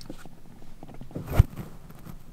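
Handling noise from a hand brushing over the camera and its microphone, with one sharp thump about one and a half seconds in, against quiet car-cabin background.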